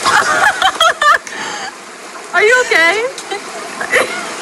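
Voices speaking and calling out over the steady rush of a stream.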